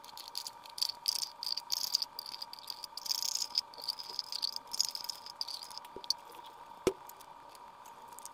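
Light crackling and clicking of kitchen handling as a can of milk is emptied into a plastic mixing bowl, with plastic being handled. A single sharp knock comes about seven seconds in, over a faint steady high hum.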